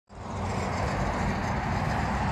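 Steady outdoor background noise: a low, uneven rumble with a hiss over it, fading in at the very start.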